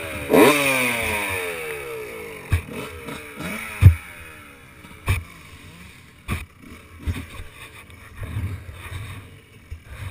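Motocross dirt bike engine giving a quick rev, then its note falling and fading as it winds down and moves off, with more bike engine sound further away later. Several sharp knocks sound over it, the loudest about four seconds in.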